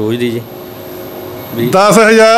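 A man talking, broken by a pause of about a second in which only a steady background hiss with a faint hum is heard; speech picks up again, louder, near the end.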